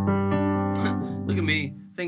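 Sustained chords played on a MIDI keyboard through a software instrument, changing chord in the first half and dying away shortly before the end, with a voice faintly heard over them.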